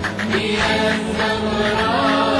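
Arabic Shia devotional song (nasheed): voices chanting a melodic line in layers, with a steady low tone beneath.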